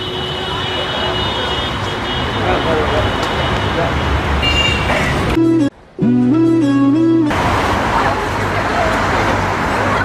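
Busy street ambience of traffic and passers-by. About five and a half seconds in, a short edited-in musical sting of a few stepped tones lasts about two seconds and briefly cuts out near its start.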